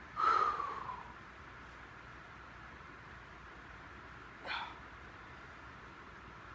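A man's sharp, loud breath as he lets go of a stomach-vacuum hold after about five seconds of drawing the belly in, then a second, shorter breath about four and a half seconds in.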